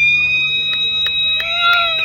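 A football ground siren sounding one long, steady high-pitched blast that winds up at the start and begins to fall away near the end, with a few sharp clicks over it.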